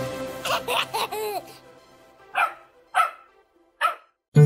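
The last notes of the song's music die away, then a cartoon dog gives three short barks in the second half, each with quiet between.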